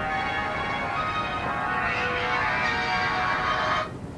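Mobile phone ringtone playing a bright, bell-like melody, which cuts off suddenly near the end as the call is answered.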